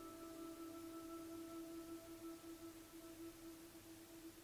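Soft, quiet ambient background music: one held note that fades a little near the end.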